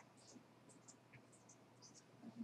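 Near silence: room tone with faint, scattered high ticks.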